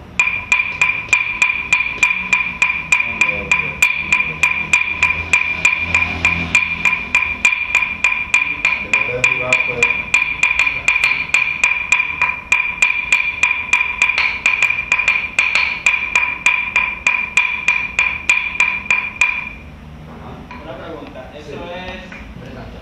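A small hand-held percussion instrument struck with a stick in a fast, even beat, each stroke ringing at the same clear pitch. It stops about three seconds before the end.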